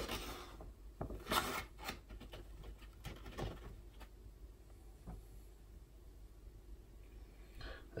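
Scoop digging into powder inside a stand-up bag: a few short rustles and scrapes, the loudest about a second and a half in, with quiet stretches between.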